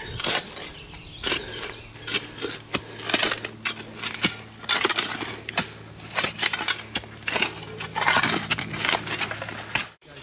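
Digging by hand in soil packed with broken porcelain and glass: irregular scrapes and crunches of a tool in the dirt, with shards clinking against each other.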